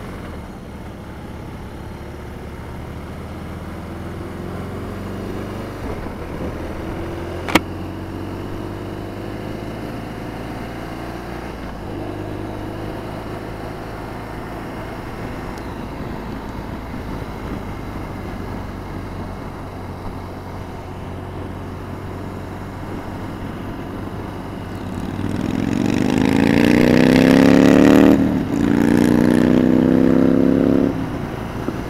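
BMW R1200RT's boxer-twin engine running as the bike rides along, its pitch rising slowly as it picks up speed, with a sharp click about seven and a half seconds in. Near the end the engine is opened up hard, growing loud with its pitch climbing, dipping briefly at a gear change, then pulling high again.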